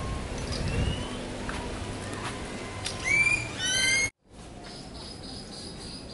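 A bird's quick run of short, sweeping high chirps about three seconds in, cut off suddenly about a second later, over a low outdoor rumble.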